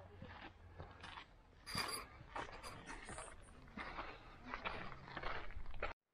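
Footsteps crunching on a gritty dirt trail, a string of irregular steps over a low steady rumble; the sound cuts off abruptly near the end.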